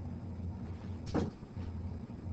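A single short knock or bump, like a door or cupboard shutting, about a second in, over a steady low room hum.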